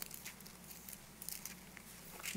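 Faint rustling and a few soft ticks of Bible pages being turned, over a low steady hum.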